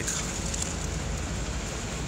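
Steady outdoor city-street background noise, a low rumble and hiss with no distinct events.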